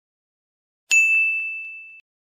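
A single bright bell-like ding, struck once about a second in and ringing down on one clear high tone, then cut off suddenly.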